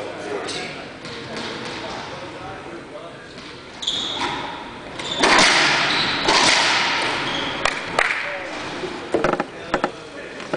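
Sharp cracks of a racquetball struck by racquets and hitting the court walls during a rally, over the chatter of voices in a large hall. A louder swell of crowd voices rises about five seconds in and fades after a couple of seconds.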